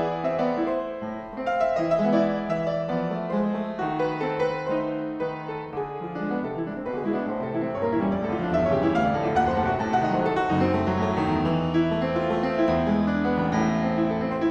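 Solo pianoforte playing classical variations: a steady flow of quick notes that grows fuller, with deeper bass notes sounding in the second half.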